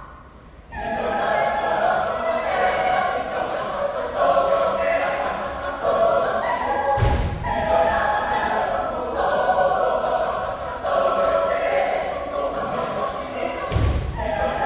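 Choir singing a folk-song arrangement in full voice, starting just after a brief pause at the opening. Two heavy low thumps cut through the singing, about seven seconds apart.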